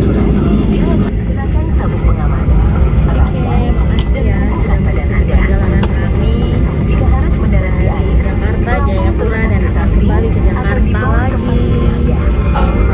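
Steady low rumble of a jet airliner's engines heard from inside the cabin as the plane taxis before takeoff, with people's voices talking over it.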